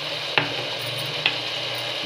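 Chopped vegetables with masala powder frying in oil in an aluminium pressure cooker, with a steady sizzle and two light clicks about half a second and a second and a quarter in.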